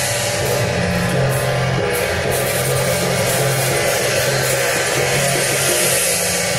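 Taiwanese temple procession percussion played loud and without a break: drum, hand gong and cymbals beating out the accompaniment for a Guan Jiang Shou troupe.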